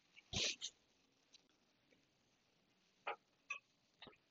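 Near silence, with the lesson's audio apparently cut out, broken by a few brief faint noises: one about half a second in and two short ones near three seconds in.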